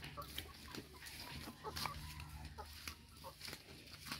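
Rhode Island Red chickens clucking faintly, a few short, scattered clucks, with some soft knocks.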